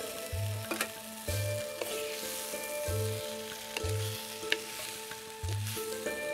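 Hot oil sizzling in a pot as boiled manioc pieces are stirred into a fried spice mixture, with a spatula clicking against the pot a few times. Background music with a steady slow beat plays over it.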